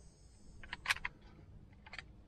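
A few small plastic clicks as a dash cam and its mount are handled and latched together, the sharpest about a second in.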